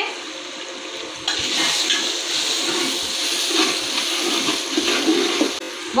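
Mutton masala sizzling in a large aluminium cooking pot, a steady hiss that starts suddenly about a second in, as chopped coriander and mint go into it.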